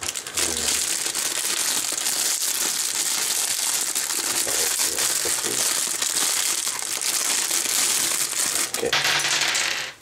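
Clear plastic accessory bag crinkling and rustling without a break as it is handled and opened, with small metal parts clinking inside it.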